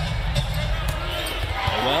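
A basketball being dribbled on a hardwood court, short sharp bounces over the steady background rumble of an indoor arena during live play.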